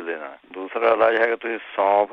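Speech only: a person talking with a thin, telephone-like sound.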